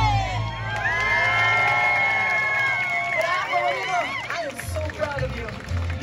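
Live Latin folk-style show music breaks off, and voices hold one long high note for about two seconds among cheers and whoops from performers and crowd. The band's beat comes back in near the end.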